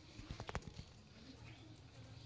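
A dog chewing and mouthing a quilted cloth, with a quick cluster of faint clicks about half a second in.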